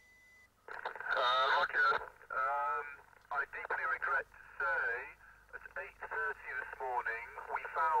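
A voice coming over a two-way radio link, thin and tinny, speaking in short broken phrases from about a second in. A faint steady high tone sounds before the voice starts.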